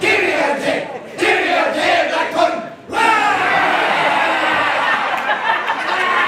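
A group of men shouting a haka chant in unison: two short shouted phrases, then from about three seconds in a long continuous group shout.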